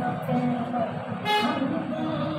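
Indistinct background voices, with a short, high toot a little over a second in.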